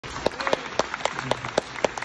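Hands clapping in a steady beat of about four claps a second, with weaker scattered claps in between.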